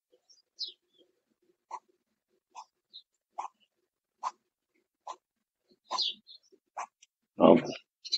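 A horse snorts once, loud and short, near the end. Before it come soft, light taps about once a second while the horse is handled, along with a few faint high chirps.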